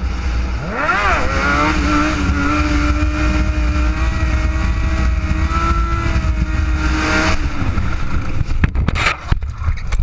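Motorcycle engine revving up about a second in and then held at steady revs, over heavy low wind rumble. The engine note drops away about seven seconds in, followed near the end by a series of sharp knocks and scrapes as the bike and rider crash onto the road.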